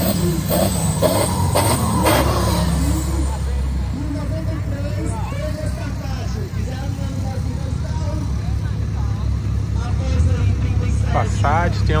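Lifted 4x4's diesel engine running with a deep, steady rumble, louder in the first few seconds as it blows black smoke from its exhaust stack.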